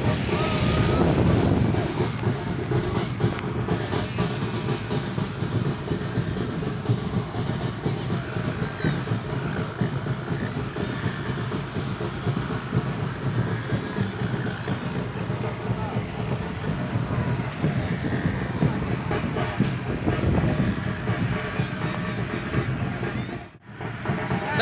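Busy outdoor background of many people's voices mixed with music, holding steady until it cuts off abruptly near the end.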